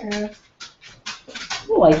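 A dog in the room making a quick run of short sounds, about five a second, starting about half a second in.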